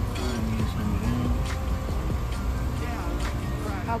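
Background music with faint voices behind it, over a steady low rumble.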